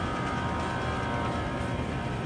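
A steady drone of several held tones over a constant background hiss, unchanging throughout.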